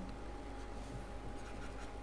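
Faint scratching and tapping of a stylus writing on a pen tablet, over a faint steady tone and room tone.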